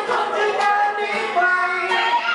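A man singing a Thai pop song into a microphone, accompanied by an acoustic guitar.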